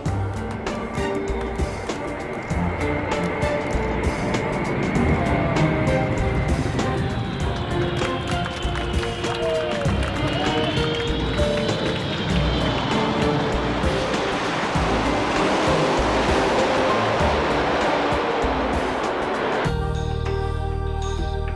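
Music playing over the roar of an Air France Concorde's Rolls-Royce/Snecma Olympus 593 turbojets as it lands and rolls out. The roar grows louder in the second half and stops suddenly at a cut near the end.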